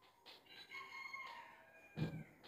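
Faint, high squeaks from a marker tip dragging across a whiteboard while writing, in several short strokes with a sliding squeak near the end.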